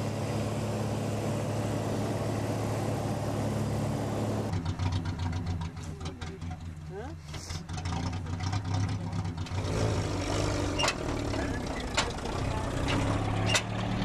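Steady drone of a light aircraft's piston engine heard from inside the cabin. About four and a half seconds in it gives way to a quieter, lower engine idle, with scattered clicks and knocks in the second half.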